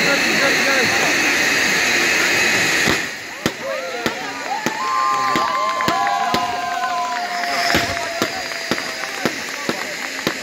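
Ground spark fountains hissing steadily. The hiss drops away after about three seconds, and a run of sharp cracks and pops follows, with people's voices calling and shouting over it.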